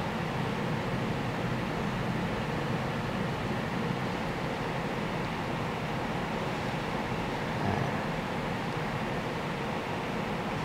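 Steady room noise: an even hiss with a low hum underneath, like an air conditioner or fan running, with no distinct events.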